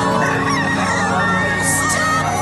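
A rooster crowing over steady background music, its call gliding up and down in pitch.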